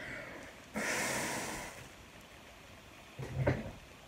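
A person blowing hard through a wet terry towel soaked with makeup remover to whip it into foam: one rushing blow starting about a second in and lasting about a second, then a short breath near the end.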